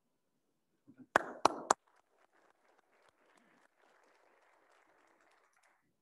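Three sharp handclaps close to the microphone about a second in, followed by faint, scattered applause from a small audience that dies away near the end.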